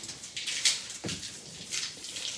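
Masking tape being peeled off the edge of watercolour paper: a few short, rasping tearing strokes.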